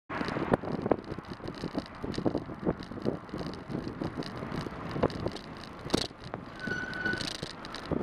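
Bicycle ridden along a road, heard from a bike-mounted camera: wind buffeting the microphone and tyre and road rumble, with many irregular clicks and rattles from the bike over the surface. A short, steady high squeal sounds near the end.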